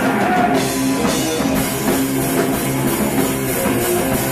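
A rock band playing loud, heavy music live, with electric guitar over a drum kit.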